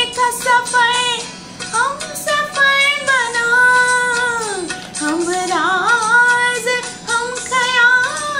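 A woman singing solo, holding long notes with ornamented slides between them; about four and a half seconds in her pitch falls steeply and then climbs back up.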